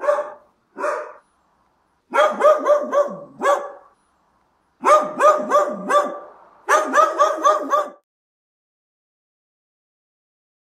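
A dog barking: two single barks, then three quick runs of about five barks each, ending about eight seconds in.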